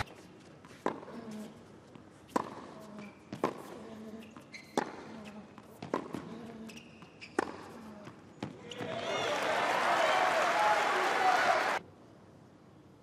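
Tennis rally on a hard court: racket strikes on the ball about once a second, seven hits in all. After the last one the crowd breaks into applause and cheering, which is the loudest part and cuts off suddenly just before the end.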